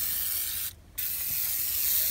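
Aerosol can of 3M foaming engine degreaser spraying with a steady hiss, cut off briefly just before a second in as the nozzle is released, then pressed again.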